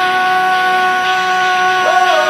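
A rock song in which a singer holds one long, steady high note over the band, the pitch dipping right at the end.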